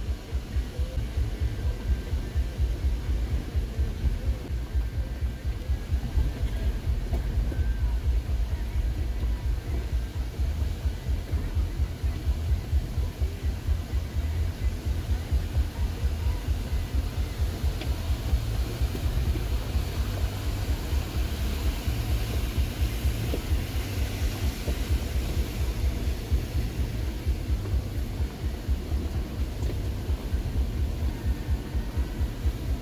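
Jeep Gladiator's engine and drivetrain heard from inside the cab: a low, throbbing rumble as the truck crawls slowly down over loose rock.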